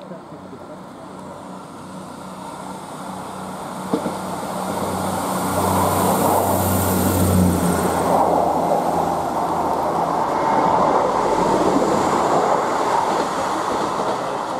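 A Class 158 diesel multiple unit passing beneath, its underfloor diesel engines droning with steady low tones. Engine and wheel-on-rail noise build up and are loudest from about five seconds in as the train passes directly below, then stay loud as it runs away.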